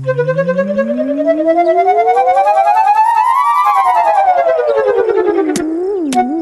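Cartoon sound effect following a golf ball's flight: a wavering pitched tone that glides steadily upward for about three and a half seconds as the ball rises, then slides back down as it falls.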